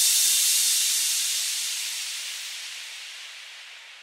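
A hiss of white noise, the closing effect of a tech house track after its drums stop, fading away steadily, its lower part thinning out first.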